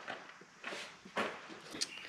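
Faint handling noises: a few short, soft rustles and scrapes of hands working on hoses and fittings in an engine bay.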